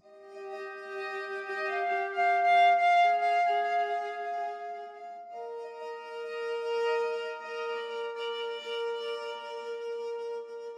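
Sampled solo viola playing a bow-pulse texture: bowed notes sounding together, swelling up and fading back in slow pulses, with a change to new notes about five seconds in.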